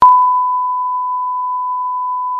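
Colour-bar test tone: one steady, pure beep at a single pitch, cutting in abruptly and holding unchanged, as used for a broadcast-style 'technical difficulties' screen.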